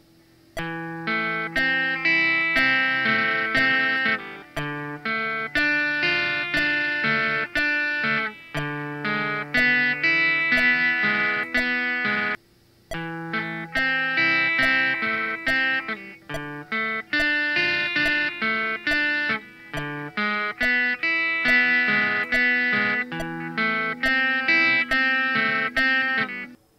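Squier electric guitar playing an arpeggio pattern, one note at a time at an even eighth-note pace, through an A minor, D minor, E7, A minor progression. Metronome clicks at 70 beats per minute keep time, and there is a short break about halfway through.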